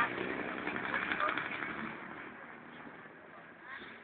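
A man's voice, indistinct words spoken close to a handheld microphone over steady outdoor background noise, the voice loudest in the first two seconds and fading away after.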